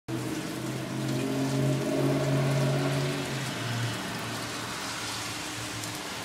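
Steady rain falling, with water dripping and running off a porch roof and its drain pipes. A loud low hum of several steady tones sits over it and stops about three and a half seconds in.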